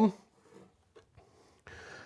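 The end of a man's spoken word, then quiet room tone with a faint tick about a second in, and a soft breath just before he speaks again.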